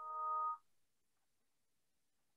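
Brief electronic chime from video-conferencing software as screen sharing begins: a chord of several steady tones that swells and stops about half a second in, then near silence.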